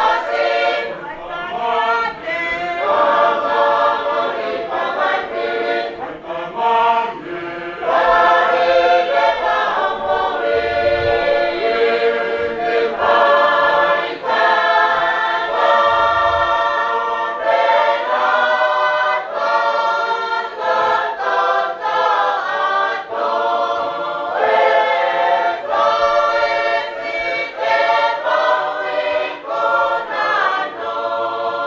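A choir singing a hymn unaccompanied, in phrases of long held notes.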